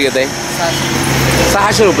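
A man speaking, broken by a pause of about a second in which a steady low hum is heard on its own.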